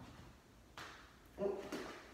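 A woman's startled "ooh" as she loses her balance mid-exercise, preceded by a short, breathy rush of noise a little under a second in.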